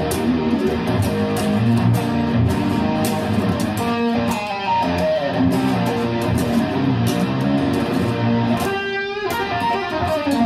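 Seven-string electric guitar played in a continuous stream of quickly picked notes and riffs. About nine seconds in, a short higher passage rings out before the picking picks up again.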